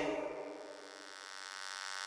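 The song's final sound dies away, leaving a faint, steady buzzing hum with many overtones that slowly grows louder.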